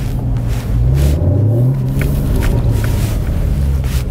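2015 Porsche Cayman S's 3.4-litre flat-six engine heard from inside the cabin while driving: a steady low drone that rises in pitch about a second in, then holds level. A few light clicks are heard near the middle.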